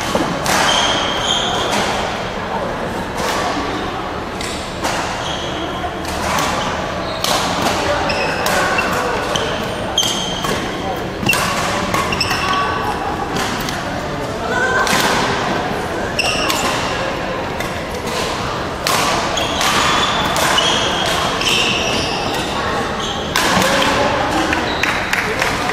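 Badminton rally on an indoor gym court: repeated sharp racket hits on the shuttlecock and short squeaks of court shoes on the wooden floor, echoing in the large hall, with voices chattering in the background.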